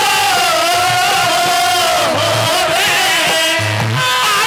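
A male ragni singer holds one long, loud, high sung note into a microphone. The pitch wavers, sags about halfway through and climbs back up, over low thudding accompaniment.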